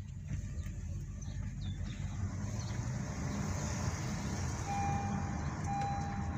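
A car driving on a wet road, heard from inside the cabin: a steady low engine and road rumble with tyre hiss that grows stronger after about two seconds. Near the end, a steady electronic beep sounds in long stretches with brief breaks.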